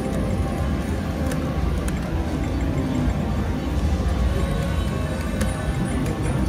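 Background music playing steadily over the low din of a casino floor, with a couple of faint clicks.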